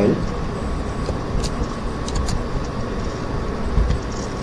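Steady low background rumble on the recording, with three short faint clicks, one about a second and a half in and two close together just after two seconds: computer mouse clicks selecting and opening a file.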